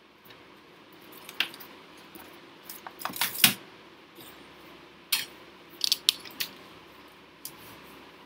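Irregular clicks and clattering knocks from an external computer keyboard being handled and connected, loudest in a cluster about three seconds in, with a few more clicks later.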